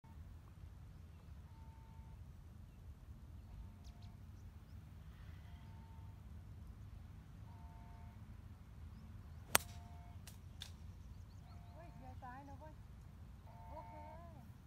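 A golf driver striking the ball once, a sharp crack about halfway through, followed by a couple of fainter clicks. Wind rumbles on the microphone throughout, with faint short chirps repeating every couple of seconds.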